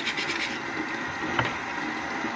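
Scrub brush bristles scrubbing a utility knife blade in a quick run of strokes near the start, over a steady hiss of running tap water. A single click comes about one and a half seconds in.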